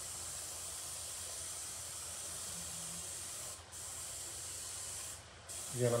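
Airbrush spraying paint: a steady hiss of air and paint, broken briefly twice, about three and a half seconds in and again past five seconds.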